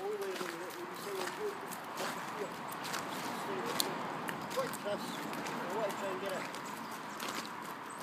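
Faint, indistinct voices over a steady background hush, with scattered light clicks and steps on wet tarmac.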